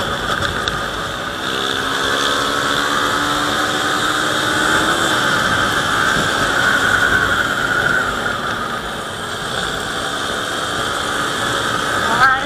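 Wind rushing over the microphone of a moving Yamaha Sniper 150 motorcycle, its small single-cylinder engine running underneath, with the engine's pitch gliding up a little a couple of seconds in.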